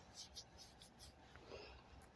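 Near silence: room tone of a small recording room, with a few faint brief ticks.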